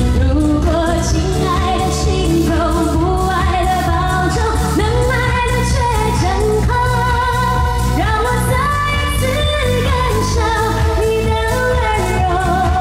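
A woman singing a Chinese pop song live into a handheld microphone, with long held notes, over a backing track with a steady beat.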